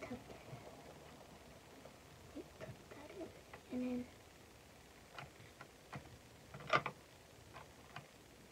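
Light clicks and taps of fingers handling a small plastic toy washing machine. A few come in the second half, spaced about half a second apart, and the loudest is a sharp click near seven seconds in.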